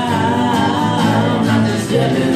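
A small band playing a rock song live, with strummed acoustic guitars and electric bass under singing.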